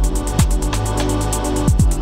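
Electronic background music with a steady beat: fast hi-hat ticks over deep bass drum hits that drop in pitch, on a held bass line.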